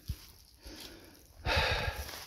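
A person's short, loud breath out close to the microphone about one and a half seconds in, after a soft thump near the start.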